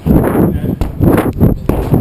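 Loud, uneven gusts of wind and handling noise on the microphone of a handheld camera being whirled around fast.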